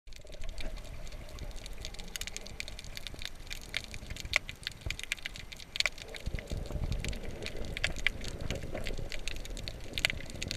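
Underwater sound picked up by a GoPro in its waterproof housing: muffled water noise with many sharp clicks and crackles, and a low rumble that grows stronger about six seconds in.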